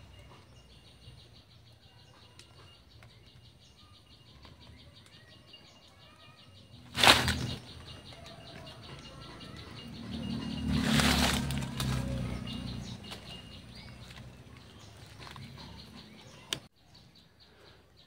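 Leaves and plant stems rustling as a cluster of red fruit is handled and pulled from a forest plant, with two brief louder rustles about seven and eleven seconds in and a low rumble around the second. Underneath is a faint, rapid high-pitched ticking of forest insects.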